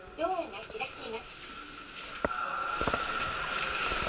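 A short voice in the first second, then a few sharp clicks and a steady high tone with train running noise that grows louder toward the end.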